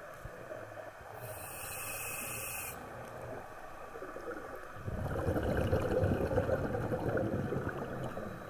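Scuba regulator breathing underwater: a hiss of inhaled air through the regulator at about one to three seconds in, then a loud bubbling rumble of exhaled air from about five seconds in that lasts a couple of seconds.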